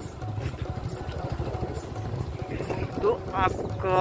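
Motorbike engine running at road speed with wind rushing over the microphone, heard from on board the moving bike. A voice comes in near the end.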